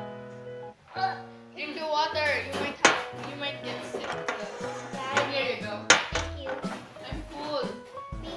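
Background music with held notes, a low beat coming in near the end, and girls' voices over it. There are two sharp clicks, about three and six seconds in, likely a fork or glass knocking the cake tray.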